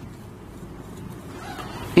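A steady, low background rumble with no speech, an even noise that swells slightly toward the end.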